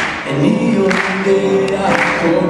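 A male singer sings a Hebrew pop song live, accompanying himself on a grand piano, with strong accents about once a second.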